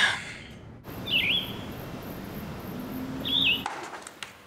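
A small bird chirping twice, each a short warbling call, about two seconds apart, over a steady background hiss.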